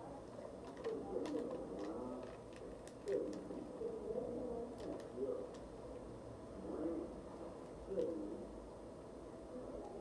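A dove cooing several times, soft low rolling calls, with faint crinkles of a paper receipt being handled.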